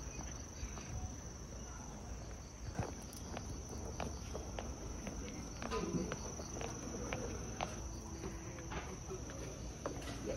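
Insects chirring in one steady high-pitched drone, with faint scattered taps of footsteps on a steel rail and gravel.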